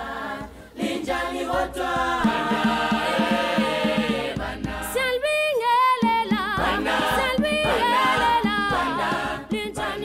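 A group of voices singing a cappella, with a high voice holding wavering notes from about five seconds in.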